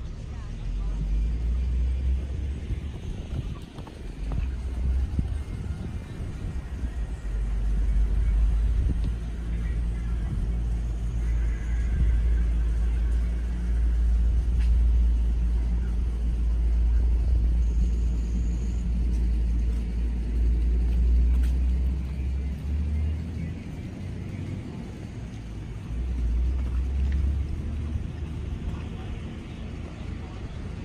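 Low, uneven rumble that swells up about a second in, stays strong through the middle and drops back near the end, with faint voices beneath it.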